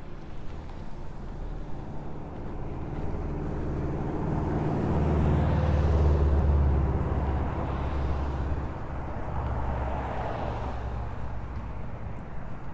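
A motor vehicle passing by: a low engine rumble with road noise builds to a peak about five to seven seconds in, then fades away.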